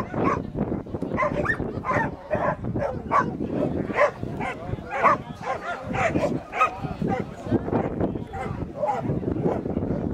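A dog barking again and again, about two barks a second, while it runs and jumps the hurdles of an agility course.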